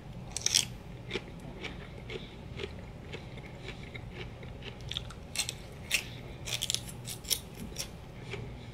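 Close-up crunching of raw celery with peanut butter being bitten and chewed: one loud crisp crunch about half a second in, then steady chewing crackles, with a louder cluster of crunches in the second half.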